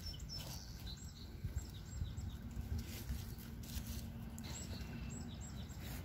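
Small birds chirping in a series of short, high, falling notes, in two runs about a second in and again near the end, over soft scrapes and rustles of gloved hands pressing loose garden soil.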